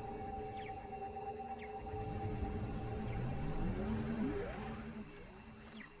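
Documentary background music: a sustained, eerie drone of steady low tones over a low rumble, with a tone that slides up in pitch about four seconds in and a faint high ticking pulse a few times a second. It fades a little near the end.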